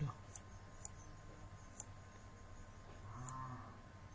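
Computer mouse clicking four times at uneven intervals while a shape is dragged and resized. A short, low hum sounds about three seconds in.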